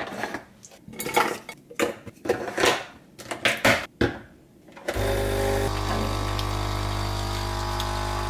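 Clicks and knocks of the capsule holder and mug being handled, then about five seconds in a Krups capsule coffee machine's pump starts with a sudden, steady buzz as it brews into the mug.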